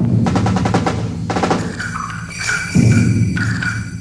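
Modern orchestral music. A fast run of percussion strokes opens it, then high held notes sound over heavy low chords, loudest about three seconds in.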